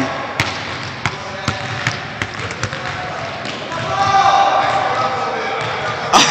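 A basketball bouncing on a hardwood gym floor in a large gym: a string of sharp, irregularly spaced thuds.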